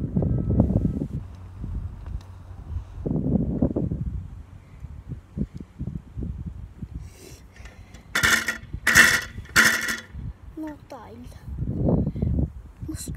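Stunt scooter rattling and clinking as it is rocked and shaken by hand at the bars and clamp, with low handling thuds early on and three sharp rattling bursts near the end. The rattle is the sign of play in the front end: the scooter isn't dialed.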